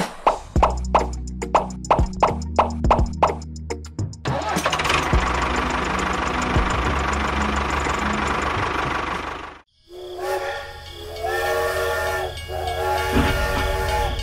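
Background music with a quick plucked beat, giving way about four seconds in to a steady steam hiss. After a brief break, a steam train whistle sounds a held chord of several notes.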